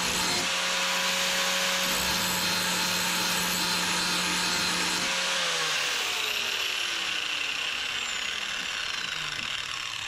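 Angle grinder grinding the steel edge of a Honda HRR2169VKA lawn mower blade, a steady motor whine with a harsh grinding hiss. About five seconds in it is switched off and its motor winds down with a falling whine over the next few seconds.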